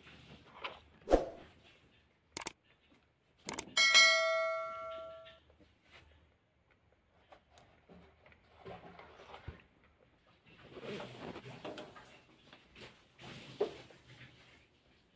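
Fish being lifted and shifted in a plastic basin: irregular knocks and rustling handling noise. About four seconds in, a struck metal object rings out, the loudest sound, fading away over about a second and a half.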